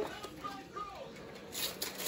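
Wrapped gift boxes being handled, with a few soft paper rustles near the end and a faint voice in the background.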